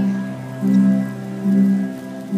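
Music with held low notes that swell in a steady pulse a little more often than once a second.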